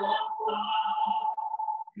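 Hymn singing: a voice holds one long note for nearly two seconds, breaking off just before the next line.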